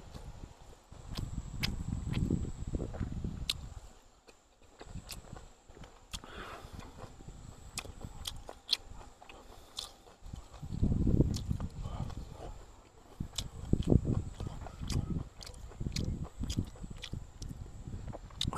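A man chewing a mouthful of boiled fatty pork and rice close to the microphone, in rhythmic bouts of chewing, with short sharp clicks between them.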